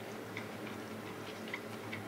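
Wooden spoon lightly tapping and scraping against a bowl while gathering up the last of the fried rice. It makes a few faint, irregular ticks.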